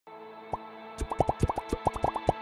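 Logo-intro music: a held chord with quick, bubbly rising blips. One blip comes about half a second in, then a rapid run of about ten in the last second.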